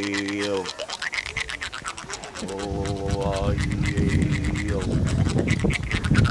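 A man voicing long, buzzy held vowel tones through a small call or kazoo held to his lips. There are two held notes, each sliding in pitch as it ends, the second starting about two and a half seconds in. A rough noise builds beneath the second note toward the end.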